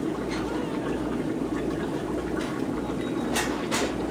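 Steady hum and hiss of a fish store's many aquarium air pumps and bubbling sponge filters, with a few short clicks near the end.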